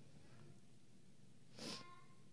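Near silence, broken about one and a half seconds in by a brief, faint, high-pitched child's voice answering from far off the microphone.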